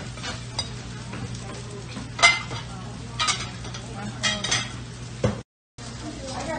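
Diner kitchen at work: a steady low hum with frying on a flat-top griddle, broken by several sharp clinks and clatters of metal utensils and dishes about a second apart. The sound cuts out briefly near the end.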